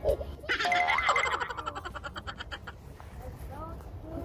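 A 'boing' sound effect about half a second in, a fluttering tone that fades away over about two seconds, over background music.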